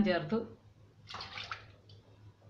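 Water poured into a steel pot of chopped tomatoes: a short splashing pour about a second in. A voice is heard during the first half-second.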